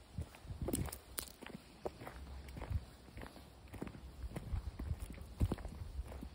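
Footsteps crunching on a loose gravel path, about two steps a second.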